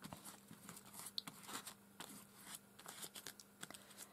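Faint, irregular scraping of a silicone hair-dye tinting brush being dragged through wet paint across a paper background, a string of soft short strokes.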